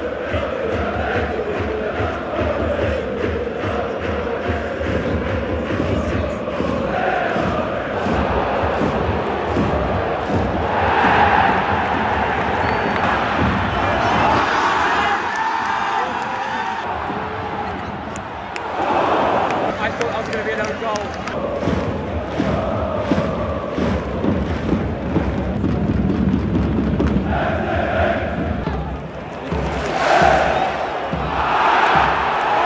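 A large football stadium crowd singing and chanting together, a continuous wall of voices that swells louder a couple of times.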